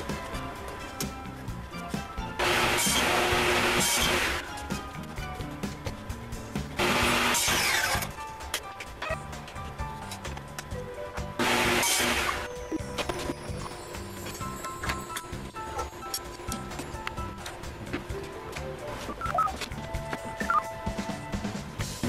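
Table saw cutting 1/2" Baltic birch plywood in three short bursts, each a second or two long, over background music.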